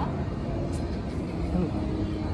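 Steady low rumble with faint, indistinct voices of people on an open bus-terminal platform.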